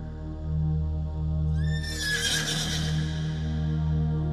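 A horse neighs once, about one and a half seconds in, a falling whinny lasting about a second. It sounds over slow instrumental music held on sustained low notes.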